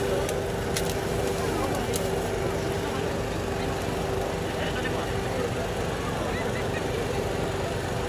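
Steady food-stall background noise: a constant hum and rumble with indistinct voices, and a few light clicks of handling in the first two seconds.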